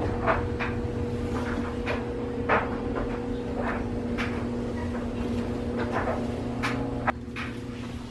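Fluffy extendable duster scraping and brushing along wall baseboards in quick strokes, one every half second or so. A steady low hum runs underneath and drops away about seven seconds in.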